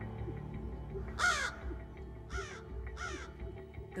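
American crow cawing three times, the first caw the loudest and longest, over soft background music.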